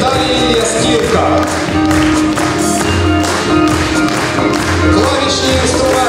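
Live instrumental ensemble music with a steady beat, held tones and recurring low bass notes.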